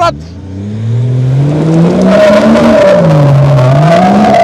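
Nissan Patrol with a swapped-in BMW engine accelerating hard away on a dirt track. The engine note climbs steadily, falls back about three seconds in and climbs again, with tyres scrabbling on the loose dirt.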